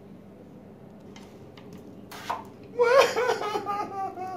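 Quiet room tone, then about three seconds in a person's high, wavering laughing voice breaks in and carries on to the end.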